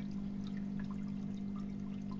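Water pouring steadily through clean, freshly replaced filter floss into the filter chamber, now flowing freely, over a steady low hum.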